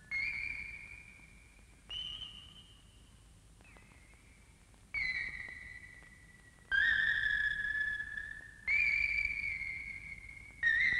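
A run of high, whistle-like electronic tones, six in all, each starting suddenly, holding one pitch or sliding slightly down, and fading over a second or two; the last two are the loudest. An eerie sound-effect score for an animated cartoon.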